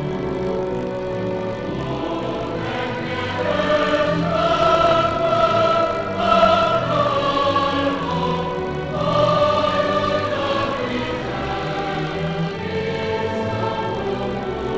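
Large mixed choir singing a sacred choral piece with orchestral accompaniment, double bass and cellos among the strings. The voices swell to louder held notes about four seconds in and again just past the middle.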